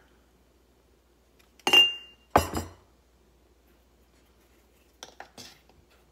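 Glass sugar dispenser with a metal cap clinking: two sharp clinks about two-thirds of a second apart, the first with a brief high ring, then a few light clicks near the end.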